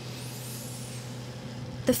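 Steady low machine hum from a salmon-farm feed barge's feeding system while it distributes fish-feed pellets.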